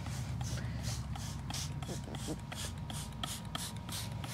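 Hand trigger spray bottle being pumped rapidly, each squeeze a short hiss of mist, about three a second.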